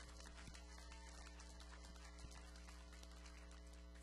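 Faint, scattered audience applause over a steady electrical mains hum from the sound system, with one knock about two seconds in.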